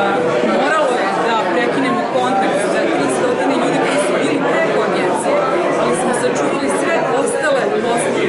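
Speech: a woman talking, over the chatter of a crowd in a large room.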